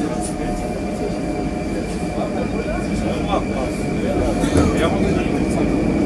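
Metro train running along the platform, heard from inside the car: a steady rumble of the wheels with a thin, steady high whine, growing a little louder near the end as the train picks up speed.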